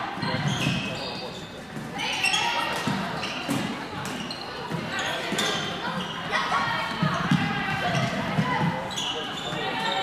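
Floorball play in a large, echoing sports hall: players' voices calling out, mixed with repeated short knocks of sticks and the plastic ball on the court.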